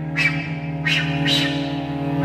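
Flute and cello playing together: the cello holds a steady low note while the flute plays a few short, breathy, accented notes.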